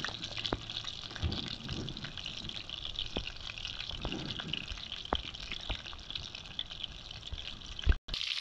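Sea bass fillets frying in hot oil in a pan: steady sizzling with scattered pops, while wind buffets the microphone in low rumbling gusts. A single loud thump comes just before the end.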